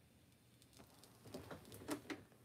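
Light handling noises on a desk: a few soft taps and rustles that start about two thirds of a second in and grow louder near the end, after a near-silent start.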